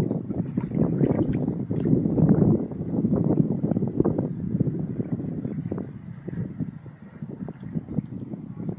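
Wind buffeting the camera's microphone in uneven gusts, a low rumbling rush that is strongest over the first few seconds and eases a little later on.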